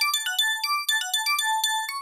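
Nord Stage 4 synth (Nord Wave 2 engine) playing through its arpeggiator: a rapid, evenly paced run of short, high, bright notes.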